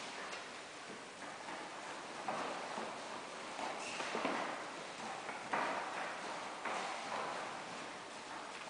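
Irregular knocks and thumps in a large echoing gym hall, from aikido partners stepping and moving on foam floor mats.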